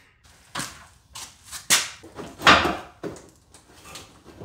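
Plastic inner fender liner being worked back into a truck's front wheel well: a run of irregular knocks and scrapes, the loudest about two and a half seconds in.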